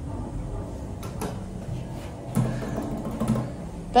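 Hydraulic lift car travelling, heard from inside the car: a steady low hum and rumble, with a light click about a second in and a stronger low hum from about halfway through that eases off near the end.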